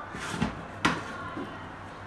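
Domestic oven being opened and its metal baking tray handled: one sharp knock a little under a second in, with quieter handling noise around it.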